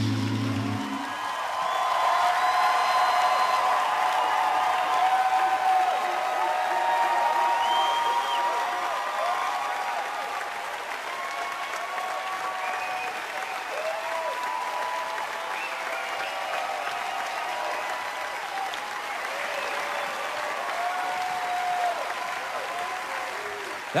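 An a cappella group's final held vocal chord ends about a second in, and a studio audience breaks into applause and cheering with whoops and shouts. The clapping and cheering are loudest for the first several seconds, then ease off somewhat.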